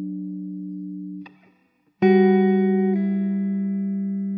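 Background music: a held chord fades and breaks off a little over a second in. After a short silence a new chord is struck about two seconds in, shifts to another chord about a second later and rings on, fading.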